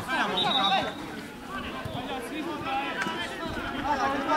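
Indistinct voices: a man's voice briefly at the start, then fainter shouts and chatter from players on the pitch.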